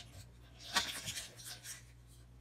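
Faint clicks and rustles clustered about a second in: handling and drinking noises of a man drinking from a small glass while lying on the floor.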